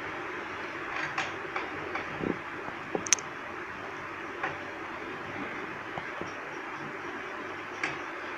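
Gathered satin fabric being handled and shifted at a sewing machine, with soft rustling and a few light clicks (one sharp click about three seconds in) over a steady background hum.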